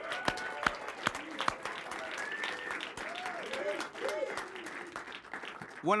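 Studio audience applauding, a dense patter of hand claps, with some voices among the crowd; the applause fades just before speech resumes near the end.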